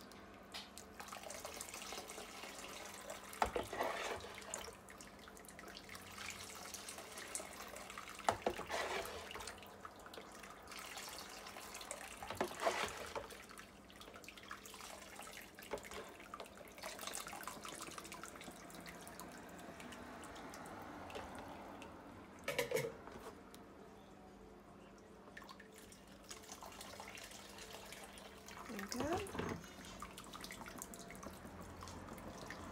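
Hibiscus juice pouring from a plastic jug and trickling through a fine sieve into a bowl, a faint steady liquid sound. A few short, louder sounds break in along the way.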